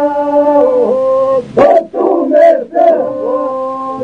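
Men's group singing Lab Albanian iso-polyphony: voices hold a long chord over a steady drone, then break off about one and a half seconds in and attack a new phrase together before settling onto held notes again.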